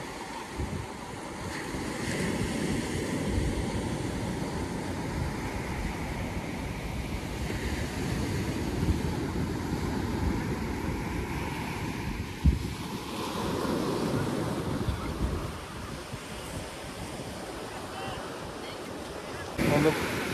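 Sea waves washing onto a sandy beach, swelling and ebbing, with wind buffeting the microphone. There is one brief thump a little past halfway.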